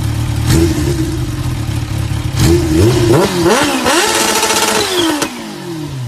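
Kawasaki Ninja H2's supercharged inline-four idling, then revved several times from about two and a half seconds in, held at high revs for about a second, and falling back toward idle near the end.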